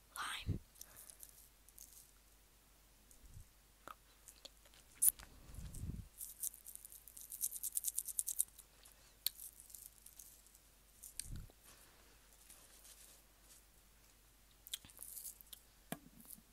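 Close-miked ASMR mouth and handling sounds while tasting flavoured sugar from small plastic fruit-shaped containers: chewing-like sounds, a fast run of crisp clicks for about two seconds in the middle, and a few soft low knocks.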